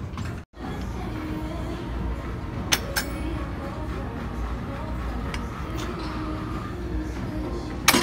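Gym ambience: a steady low hum with faint background music, and the weight stack of a preacher curl machine clinking twice about three seconds in and again near the end.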